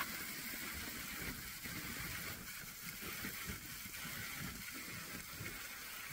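Bacon frying in a pan on a propane camp stove: a steady sizzle, with a brief tick right at the start.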